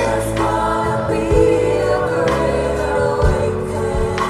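Live gospel worship music: a choir of voices holding long notes over a band with bass, and a drum hit about once a second.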